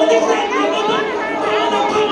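Many women's voices praying aloud at the same time, overlapping into a continuous murmur of speech with no single voice standing out.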